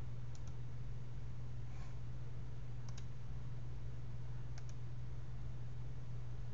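A few computer mouse clicks, each a quick press-and-release pair, over a steady low hum.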